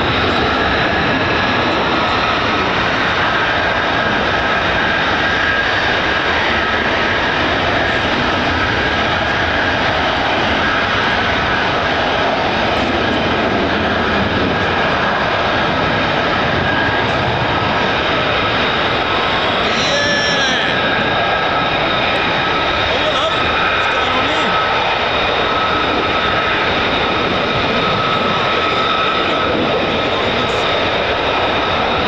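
Loud, steady roar of F-35A Lightning single-engine fighter jets, with a thin high whine held over it.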